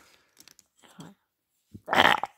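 Mostly quiet with a few faint soft sounds, then near the end a short, loud, breathy vocal burst from a person doing a play voice.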